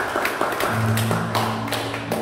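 Country string band playing: acoustic guitars and mandolin strummed in sharp chord strokes about three times a second over sustained electric bass notes.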